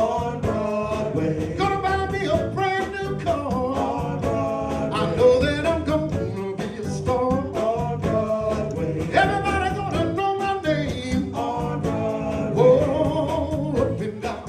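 Live male vocal group singing into microphones, backed by electric keyboard and a drum kit keeping a steady beat, heard through a PA system.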